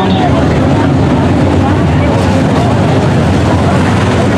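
A pack of dirt-track modified race cars running at speed, their V8 engines making a loud, steady drone.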